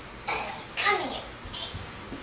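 A child's short, breathy vocal sounds: three quick bursts, the middle one falling in pitch.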